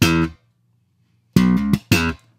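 1966 Fender Jazz Bass played slap style, recorded direct: a short slap-and-pop phrase on the A and D strings, a hammer-on from B to C-sharp, a thumbed ghost note and a popped E, ringing out. It sounds once at the start and again after about a second's gap.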